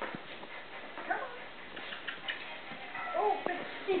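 Norwich Terrier puppy whining in a few short rising-and-falling calls, the clearest about three seconds in.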